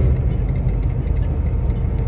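Steady low rumble of a semi-truck's engine and road noise heard inside the cab while driving.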